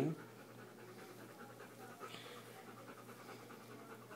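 A dog panting faintly and steadily, with a low hum underneath.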